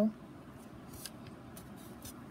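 Faint, light clicks of false fingernails tapping a smartphone's touchscreen: a single tap about a second in, then a quick few near the end.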